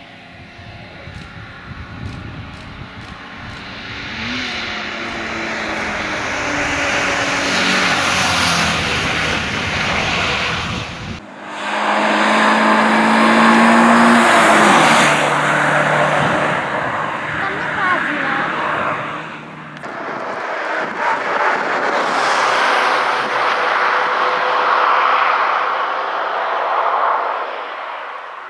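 Alfa Romeo Alfasud Sprint's flat-four engine revving hard at race pace. Three passes in a row each swell louder as the car approaches and goes by the roadside, with the engine note climbing as it pulls.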